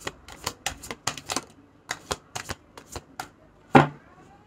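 Tarot cards being shuffled and handled: a quick, irregular run of sharp card snaps and taps, the loudest one near the end.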